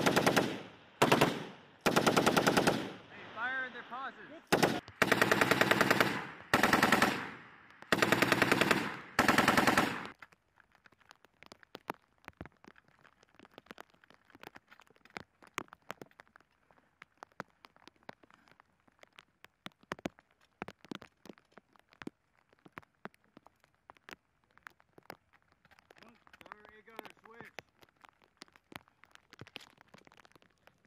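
M240B 7.62 mm belt-fed machine gun firing a string of short bursts, about seven of them, each well under a second, over the first ten seconds. After that the firing stops and only faint scattered ticks and crackles are left.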